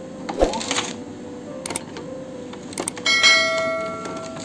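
Light clicks and knocks of the Epson LQ-2190 dot-matrix printhead being handled on its carriage. About three seconds in comes a sudden bright bell-like ding of several tones that rings and fades over about a second.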